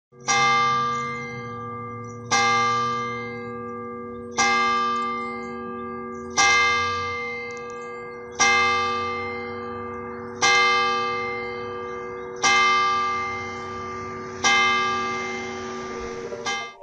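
A single church bell tolled eight times, one strike about every two seconds, each stroke ringing on with a long hum into the next.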